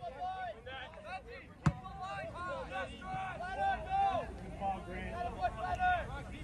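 Distant shouts and calls of players and spectators carrying across an open soccer field, overlapping throughout, with one sharp knock about a second and a half in.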